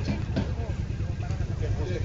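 People talking at a roadside over the steady low rumble of a vehicle engine running.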